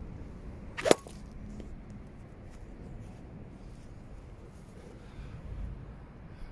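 A golf iron strikes a ball off a hitting mat once, a single sharp crack about a second in, over a steady low background.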